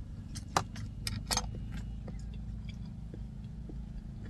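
A metal spoon clinking against a metal bowl while eating, several sharp clicks in the first second and a half, then fainter ticks, over a steady low hum.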